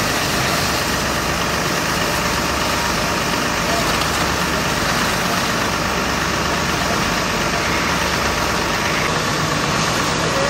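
Fire engines running steadily, their engines and pumps feeding the hoses, under a constant hiss of water jets; indistinct voices mix in.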